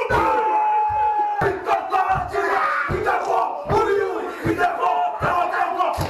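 Group of Māori men performing a haka: loud shouted chanting in unison, opening with one long held call, punctuated by repeated thumps of stamping and slapping.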